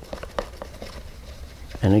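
Faint handling of a clear plastic container while a toothbrush is wetted for spattering, with a couple of light clicks about a third of a second in.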